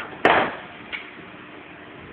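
A single sharp knock about a quarter second in, followed by a brief loud rush of noise, with a smaller click about a second in, over a steady low hum.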